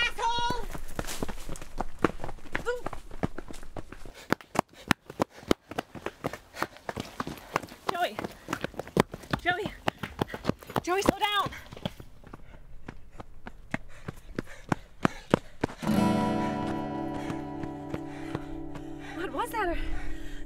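Fast running footsteps on a dirt trail, with a few short wordless shouts. Music comes in about four seconds before the end.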